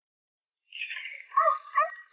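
Startled cries from a woman as two people collide: a brief scuffle, then two short high-pitched yelps about one and a half seconds in.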